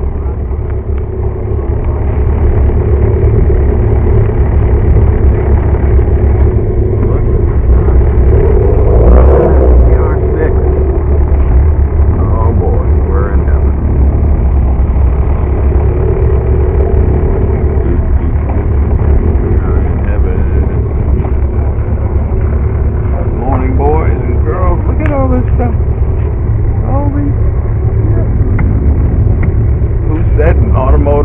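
Motorcycle engine running at low speed: a steady low rumble, swelling briefly about nine seconds in. Bits of voices come through a few times in the second half.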